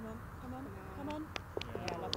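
Quiet outdoor ambience with faint distant voices and a few soft clicks in the second half.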